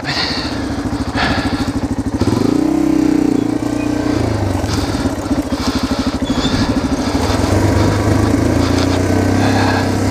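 Yamaha TT-R230's air-cooled single-cylinder four-stroke engine running at low revs on a steep rocky slope, with a brief rev about two and a half seconds in.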